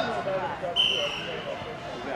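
A referee's whistle blown once: a short, steady, high blast of about half a second, about a second in, stopping the play.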